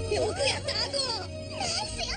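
Several voices shouting and cheering excitedly at once, with high bending yells, over background music.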